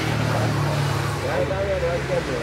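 People talking, the words unclear, over a steady low engine hum.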